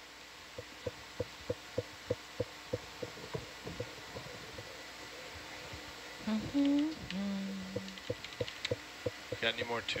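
A person hums two short notes in the middle, the second lower and held about a second; this is the loudest sound. Under it a soft regular clicking runs at about three clicks a second, fading out before the hum and coming back near the end.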